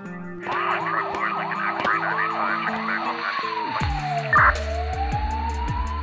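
Emergency-vehicle siren going in quick yelps, about three a second, which give way to a slow falling and then rising wail, over electronic music whose deep bass comes in about four seconds in.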